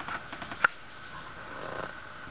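Juvenile Cooper's hawk splashing in a shallow birdbath: a few light splashes, with one sharp splash about half a second in.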